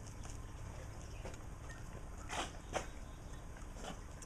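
Faint metal scrapes and clicks of a hand tool spreading the legs of a cotter pin on a small engine, with two short, sharper scrapes about two and a half seconds in, over a low steady background hum.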